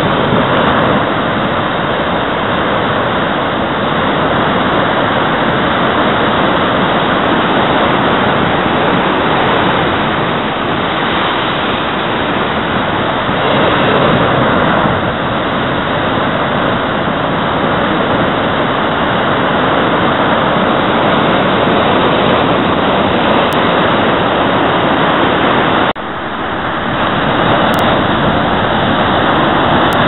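Heavy ocean surf breaking over rocks: a continuous loud roar of churning white water, with a short break near the end.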